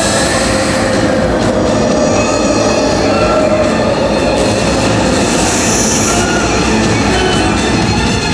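Loud show soundtrack over outdoor speakers: dense, rumbling dramatic music and sound effects with heavy low end. A rushing hiss swells and fades about five seconds in.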